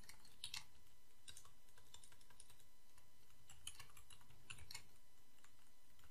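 Computer keyboard typing, quiet keystrokes in short bursts with brief pauses between them.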